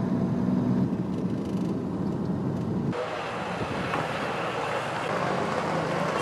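Steady low engine and road rumble from a car driving along a street. About three seconds in, the sound cuts abruptly to a broader, hissier outdoor street noise.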